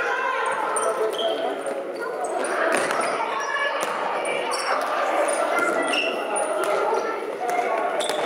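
Children playing indoor football on a sports-hall floor: the ball being kicked and bouncing, short high squeaks of shoes on the floor, and voices of players and spectators calling, all with hall echo.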